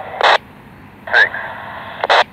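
Railroad two-way radio transmission: a short burst of squelch noise, a crew member's voice saying 'six' in thin, narrow-band radio sound, then radio hiss and a second squelch burst as the transmission ends.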